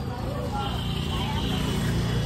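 A motor vehicle engine running close by, growing louder about half a second in, with street voices around it.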